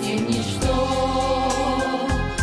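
A choir singing a Christian hymn, holding long notes.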